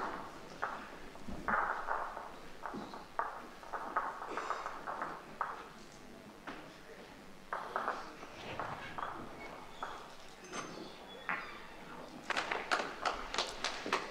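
Indoor short-mat bowls play in a large hall: scattered light knocks and taps as a bowl is delivered and runs down the carpet mat, over faint background voices, growing busier near the end.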